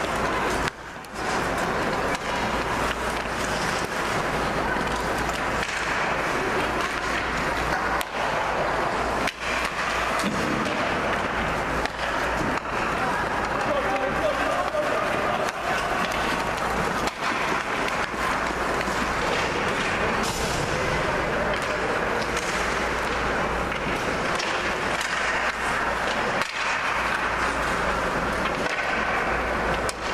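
Ice hockey rink ambience: a steady wash of indistinct spectator chatter with skates scraping on the ice, broken by a few brief dips in level.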